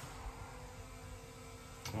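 Quiet room tone with a faint steady hum, and a short click near the end.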